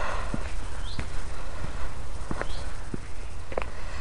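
Footsteps on a paved path, a sharp tick for each step, over a steady low rumble.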